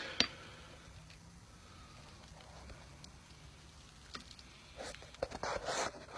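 Mostly quiet, with handling noise from the phone being turned around: one sharp click just after the start, then faint rustles and small bumps in the last two seconds.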